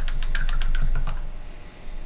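Quick, even run of light clicks, about nine a second, stopping about a second in: a paintbrush being rattled against the side of a rinse jar.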